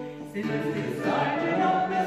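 A folk group singing a song together, several voices at once. There is a short break about a third of a second in, then the voices come back in.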